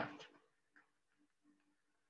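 Near silence: faint room tone with a few brief, faint blips of a low hum, just after the end of a spoken word.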